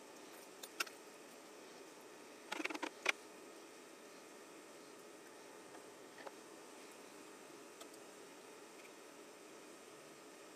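Light metallic clicks and a short clatter of wire hangers and small anodized parts being handled and hooked over the rim of a pot, loudest about two and a half to three seconds in, with a few faint ticks later, over a low steady hiss.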